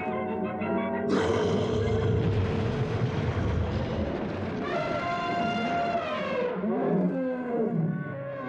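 Dramatic orchestral cartoon score under animal roar sound effects. A loud roar comes in about a second in, and a long pitched animal call follows about five seconds in, trailing off in falling glides.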